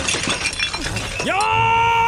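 A man's fighting yell: the voice sweeps sharply upward a little past halfway, then holds one steady pitch for nearly a second before cutting off.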